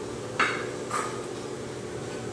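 Two short, sharp knocks about half a second apart, the first louder, each with a brief ring, over a steady low hum.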